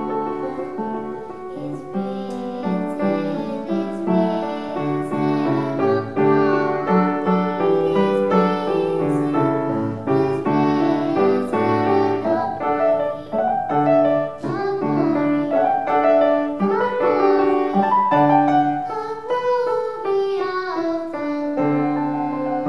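A girl singing a hymn solo with piano accompaniment, her voice wavering on held notes over sustained piano chords.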